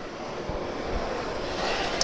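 Rustling handling noise: clothing brushing against a clip-on microphone while an airsoft rifle is lifted off its stand, with a couple of faint low knocks. The rustle grows a little louder near the end.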